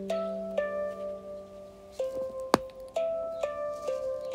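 Handpan music: single struck steel notes ringing out one after another in a slow, calm melody, each note sustaining as the next begins. A sharp tap about two and a half seconds in is the loudest sound.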